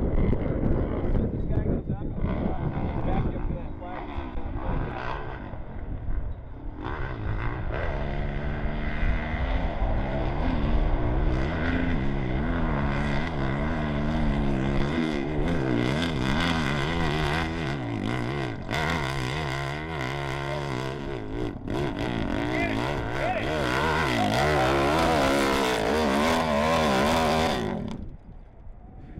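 Hillclimb motorcycle engine at full throttle up a steep dirt hill. Its pitch wavers up and down as the revs rise and fall, climbing higher toward the end.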